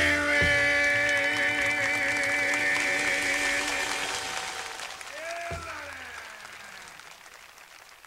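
A song reaching its end on a long held final chord, which then fades away to near silence over the last few seconds.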